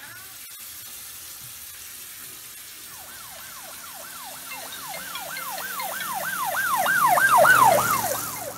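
Ambulance siren in a fast yelp, a falling whoop repeated about three times a second. It starts about three seconds in and grows louder toward the end, over a steady hiss.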